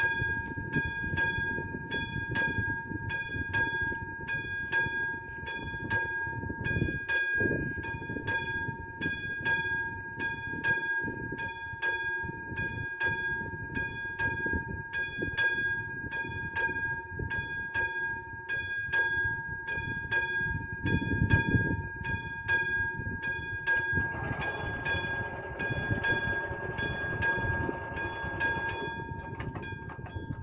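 Railway level-crossing warning bell ringing steadily, about two strikes a second over a steady high tone. In the last few seconds a whirring joins it as the crossing barriers lower.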